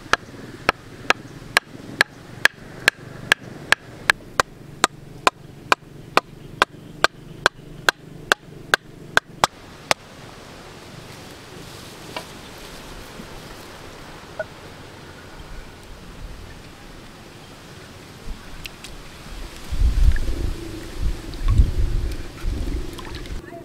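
A cleaver striking the top of a PVC pipe to drive it into riverbank mud: a steady run of sharp knocks, about two a second, for roughly ten seconds. Near the end there is low rumbling and knocking.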